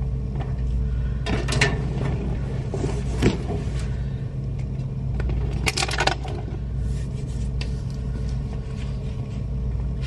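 A steady low mechanical hum, with a few short clicks and scrapes of things being handled: a cluster about a second and a half in, one near three seconds in and another near six seconds in.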